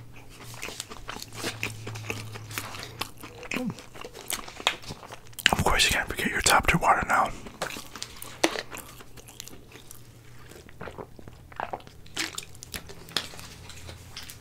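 Close-miked chewing and biting of fast food, with many small crunching clicks. About halfway through there is a louder, busier burst of mouth noise lasting a couple of seconds.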